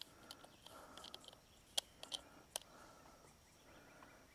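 Near silence broken by a few faint, scattered clicks from a small hand wrench turning a wheel nut on a 1:10-scale RC car's wheel as it is tightened back on.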